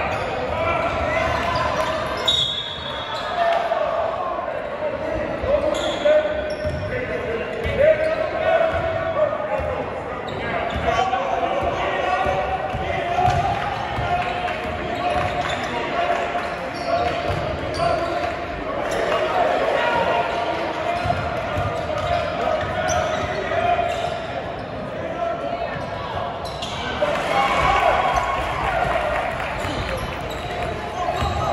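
Basketball bouncing on a hardwood gym floor during play, with the voices of spectators and players echoing in a large hall.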